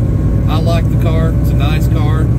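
A man talking over the steady low drone of a semi-truck's engine and road noise inside the cab.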